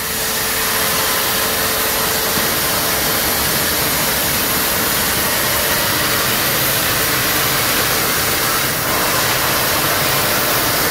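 Eckert CNC plasma cutting torch cutting a metal sheet: the steady, loud hiss of the plasma arc and its gas jet.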